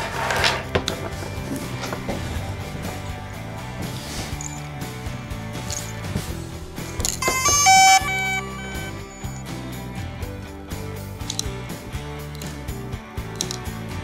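Background music throughout; about seven seconds in, a short run of electronic beeps at different pitches, the power-on chime of a DJI Mavic Pro drone.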